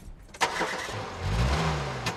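Car engine starting with a sudden catch about half a second in, then running and revving, its low pitch rising and falling once.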